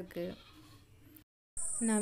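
The end of an animal bleat, a steady-pitched wavering call in short pulses, stopping about a third of a second in. Then faint quiet, and a woman's voice starts near the end.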